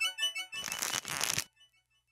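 Title-card jingle: a few quick notes fade out, then about a second of rustling noise effect that stops suddenly.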